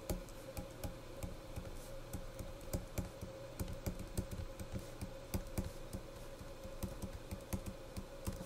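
Stylus tip tapping and clicking on a tablet screen while handwriting, in quick irregular clicks, several a second, over a faint steady hum.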